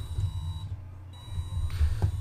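Small electric motors of a Makeblock-and-LEGO brick-testing rig running as its arms move through the test cycle: a low hum that swells and fades, with a thin high whine that drops out briefly near the middle.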